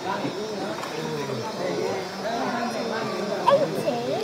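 Indistinct talk and calls from several people, with one sharper, louder call about three and a half seconds in.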